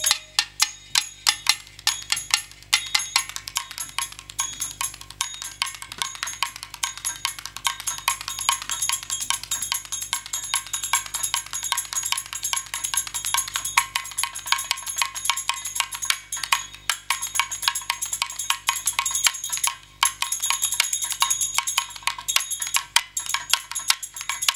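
Stage percussion playing a fast, dense rhythm of sharp clicking, metallic strikes, with no singing, and a brief break about twenty seconds in.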